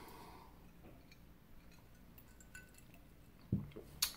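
A man sipping bourbon from a glass: faint small sipping and swallowing sounds in a quiet room, then a brief low sound about three and a half seconds in.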